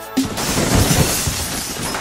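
Intro music ending in a sudden crash sound effect: a loud burst of hiss with low thuds under it that fades away over about two seconds.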